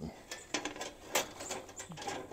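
Wire-mesh live cage trap rattling and clinking as it is handled and set, with a few sharp metallic clicks, the loudest a little past one second in.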